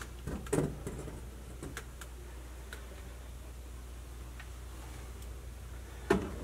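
Quiet basement room tone: a steady low hum with a few scattered light clicks and taps, the loudest about half a second in.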